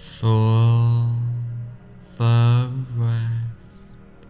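A low male voice holding a steady chanted tone twice, each about one and a half seconds long, over soft background music.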